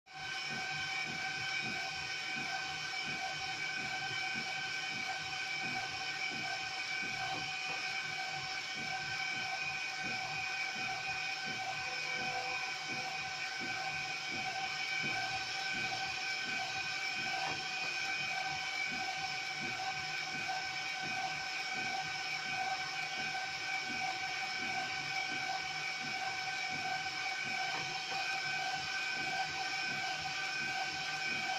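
A UV flatbed printer running while printing: a steady whine of several pitches over a hiss from its motors and fans as the print carriage moves back and forth.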